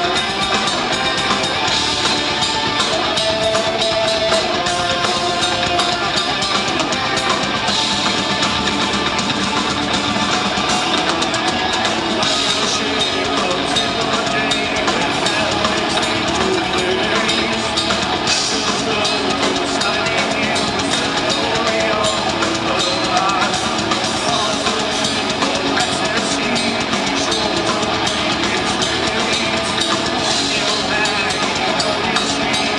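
A live metal band playing: distorted electric guitars and a drum kit, loud and continuous throughout.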